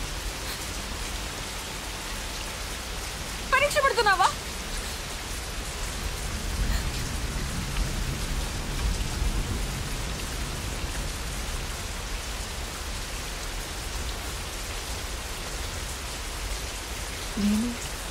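Heavy rain falling steadily, with one short, high cry from a person's voice about four seconds in.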